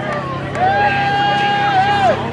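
A high voice holding one long "woo"-like cheer for about a second and a half, its pitch falling at the end, over crowd chatter and a steady low hum.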